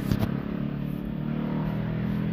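A steady low mechanical hum, with a couple of light clicks just after the start from a spoon stirring syrup and soda in a plastic cup.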